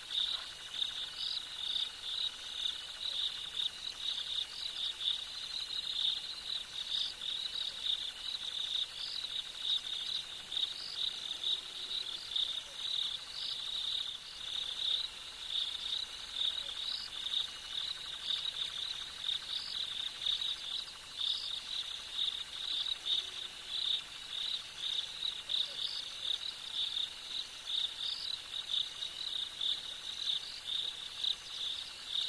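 Dense chorus of night crickets trilling without a break, a steady high-pitched shimmer that flickers slightly.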